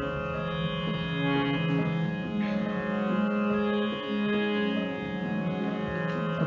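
Harmonium playing an instrumental melody of steady, held notes that step from pitch to pitch.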